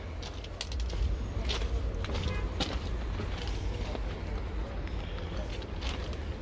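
Footsteps on gravel and frozen ground, heard as scattered light ticks over a low steady rumble.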